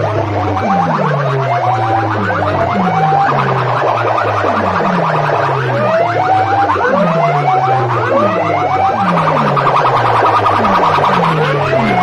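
Electronic sound-effect tones blasting from DJ sound-rig horn loudspeakers. Falling bass swoops repeat about once a second, overlaid with rising whistle-like chirps, in a loud, continuous alarm-like effect.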